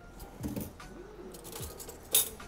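A few light clicks of metal spoons against pans and serving bowls as risotto is tasted.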